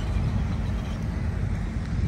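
Street traffic: a steady low rumble of vehicle engines and tyres from a van and cars moving close by.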